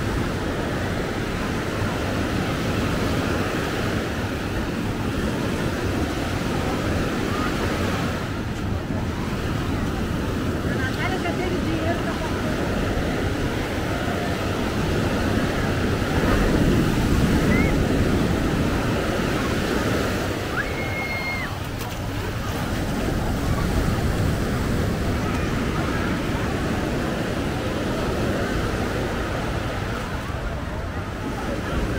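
Surf washing onto a sandy beach, a steady rush of breaking waves that swells louder about halfway through, with the chatter of beachgoers mixed in.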